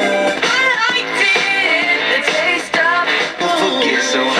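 A song with singing and instruments playing through the small speaker of a 1970 Motorola solid-state AM/FM clock radio tuned to a station.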